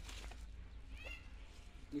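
A brief high-pitched animal call, rising and falling in pitch, about a second in, over a low steady rumble.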